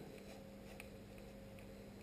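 Very quiet room with a faint steady hum, and a few faint ticks from a screwdriver turning the blade screw of a cordless hair clipper.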